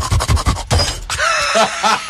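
A loud clattering crash like breaking glass, most likely a smash sound effect, with voices over it towards the end.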